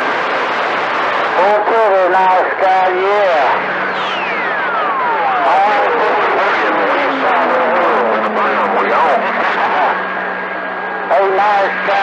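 CB radio receiver on channel 28 with a steady hiss of static and voices breaking through too garbled to follow. Over about five seconds in the middle, a whistle slides steadily down from high to low pitch, with a low hum underneath.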